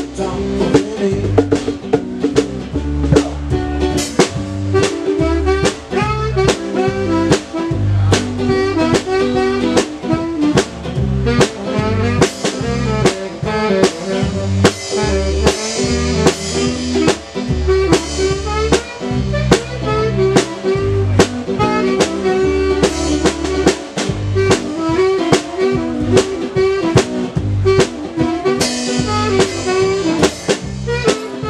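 Live band playing an instrumental passage: guitar over a drum kit keeping a steady beat.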